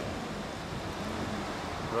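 Steady city street background noise with wind on the microphone, and a single spoken word right at the end.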